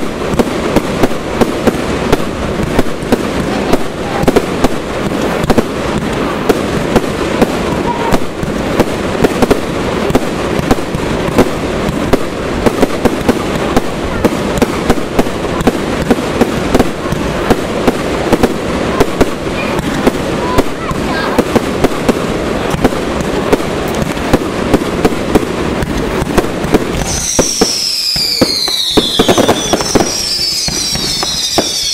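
Aerial fireworks display in a dense, continuous barrage: many sharp bangs and crackling reports a second, overlapping without a break. About three seconds before the end, several high whistles glide downward in pitch over the bangs.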